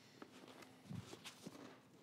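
Faint footsteps of a person walking, a few soft steps about a second in.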